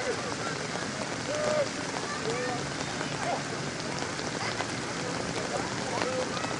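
Steady rain falling, an even hiss of rain on surfaces near the microphone with scattered fine drop ticks, and faint distant voices underneath.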